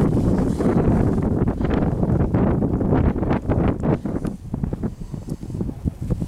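Wind buffeting the camera microphone: a loud, gusty low rumble that eases somewhat after about four seconds.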